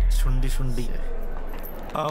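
A deep bass boom that fades away, with keys on a lanyard jangling as they are held up and shaken, and a brief murmur of voice early on.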